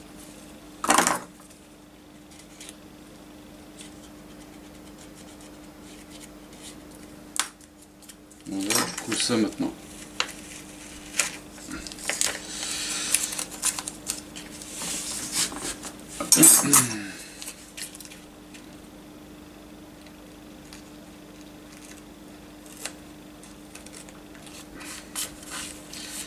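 Masking tape being handled on a small plastic model part: pressed, folded and crinkled, with a few short squeaky pulls and tears about a second in, around nine seconds and around sixteen seconds, and scratchy rustling between them.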